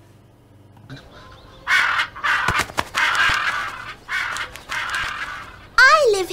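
Recorded bird calls, crow-like cawing: four rough calls starting about two seconds in.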